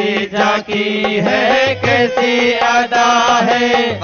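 A man chanting a devotional Sanskrit-style verse in long, held notes that glide between pitches, with short breaks between phrases, over a musical accompaniment.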